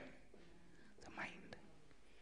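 Near silence, with a brief faint voice about a second in.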